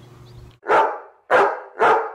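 A dog barking three times, the barks short and evenly spaced about half a second apart, starting about half a second in.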